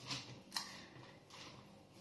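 Faint handling sounds of pressing carrot-pulp dough by hand onto a dehydrator sheet: a soft click about half a second in and a couple of brief rustles.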